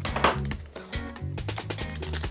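A foil trading-card booster pack being handled and pulled open by hand, giving a few short sharp rustles, the loudest about a quarter second in, over steady background music.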